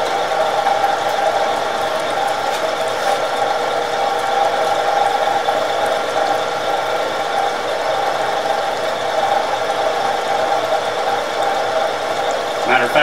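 Vertical milling machine's end mill cutting along a metal bar under flood coolant: a steady machining tone from the spindle and cut, with coolant pouring and splashing.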